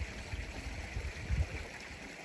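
Outdoor ambience beside a small stream: a steady faint rush of flowing water, with uneven low wind rumble on the microphone that swells about two-thirds of the way through.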